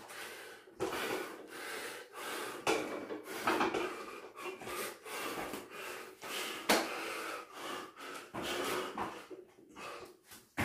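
A man breathing hard and gasping through rapid burpees, with short forceful breaths in quick succession. Thumps on the floor mat come in among the breaths, the loudest about two-thirds of the way in.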